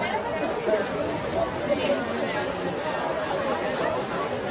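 Chatter of many people talking at once, overlapping voices with no single one standing out.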